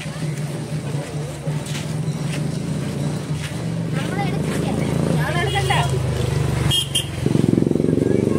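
A motorcycle engine running at low speed close by, a steady low hum that grows louder near the end, mixed with the voices of people walking in a procession.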